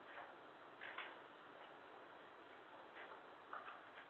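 Near silence: room tone with a few faint, irregular small clicks and rustles.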